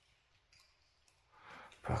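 A near-silent mine tunnel with a few faint scuffs. Near the end comes a brief scraping rush, then a man's sudden loud exclamation.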